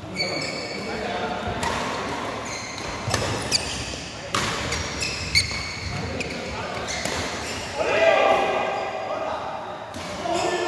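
Badminton rally in a large, echoing indoor hall: sharp racket strikes on the shuttlecock come every half second to a second through the first half, with short high squeaks of shoes on the court mat. Near the end, players' voices rise as the rally ends.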